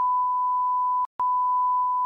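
A steady, pure censor bleep tone dubbed over the argument's speech, silencing everything else; it breaks off briefly about a second in and then starts again.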